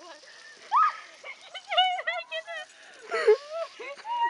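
People's voices talking, the words not made out.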